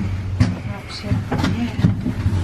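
Lift car with a steady low hum from its machinery, with a few brief murmured voice fragments over it.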